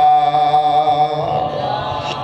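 A man's amplified voice chanting, holding one long steady note of a melodic Arabic recitation, which fades out a little past the middle.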